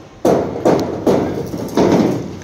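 Hammer blows on metal: about four heavy, irregularly spaced strikes in two seconds, each ringing briefly.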